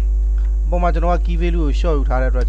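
Steady low electrical mains hum running under the recording. A voice speaks over it from about a second in.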